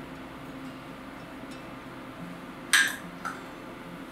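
A utensil clinks against a dish: one sharp clink a little before three seconds in, then a lighter tap.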